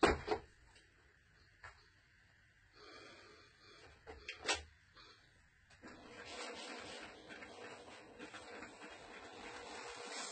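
Small craft iron handled and pressed over a starched fabric strip on a table. There are two sharp knocks right at the start and another short knock at about four and a half seconds. From about six seconds there is a faint steady rubbing hiss.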